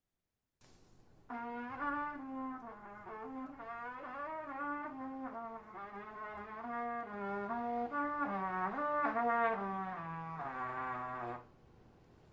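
A brass instrument playing a melodic line of connected notes in a middle-low register, the pitch wavering on the notes. It starts about a second in and ends on a held lower note shortly before the end.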